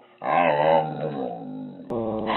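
A dog giving one long, drawn-out, voice-like growling vocalization of the kind owners call 'talking', lasting over a second. It is followed by a short click near the end.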